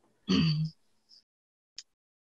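A person clears their throat once, briefly, about half a second long, followed by a faint click shortly before the end.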